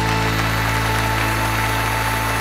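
Band accompaniment of a slow Mandarin pop ballad holding its long final chord steady after the last sung line.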